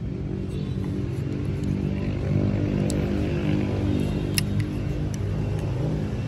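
A motor vehicle engine running steadily, a low even hum, with a few sharp clicks as the small speakers are handled.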